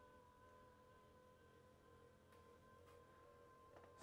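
Near silence with the faint, steady electric whine of a motorized TV lift raising the television out of its cabinet, with a couple of faint ticks partway through.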